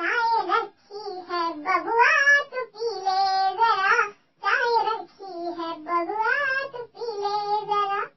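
A child's high voice singing a song alone, in short phrases with brief pauses between them.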